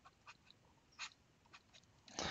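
Near silence with a few faint, short clicks, the clearest about a second in.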